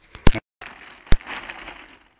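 Boots crunching through trampled snow, with two sharp, loud knocks about a second apart and a brief cut-out in the sound near the start.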